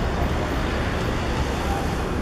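Steady outdoor background noise with a strong low rumble and no distinct events.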